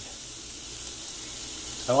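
Steak, fries, corn and mixed vegetables frying in a square nonstick pan: a steady sizzle.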